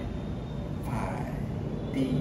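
Steady low rumble of distant city traffic, with a man's voice briefly and faintly heard about halfway through.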